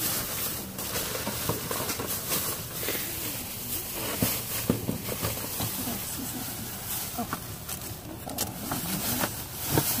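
Plastic bags rustling and crinkling as gloved hands rummage through bagged trash, with irregular crackles and scrapes throughout.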